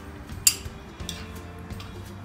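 A metal spoon stirring softened butter and chopped parsley in a small glass bowl: one sharp clink of spoon on glass about half a second in, then a few light ticks. Faint background music plays underneath.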